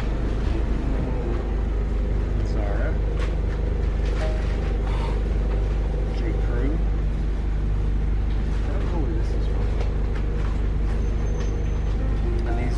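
Inside a moving city bus: the steady low rumble of the bus's engine and running gear, with faint passenger voices now and then.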